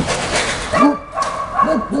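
Dogs at play: a dog gives three short barks, one about a second in and two in quick succession near the end.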